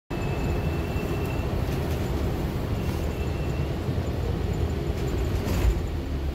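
Steady low engine and road rumble inside a moving transit bus at its rear doors, with a faint high whine twice in the first few seconds and a thump just before the end.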